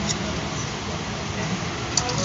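Steady low background noise with faint handling of a ceiling fan motor's cord wire, and a small click near the end as the wire is pressed into its clip.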